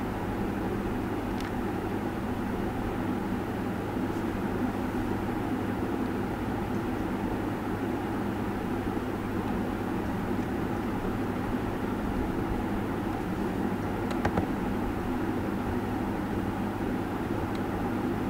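Steady room noise: a low hum under an even hiss, with a faint click about fourteen seconds in.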